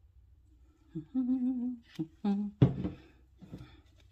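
A voice hums a short wavering phrase for about a second, then makes a few brief vocal sounds ending in a short laugh.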